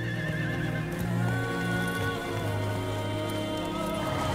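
A horse whinnying over film-score music with long held notes.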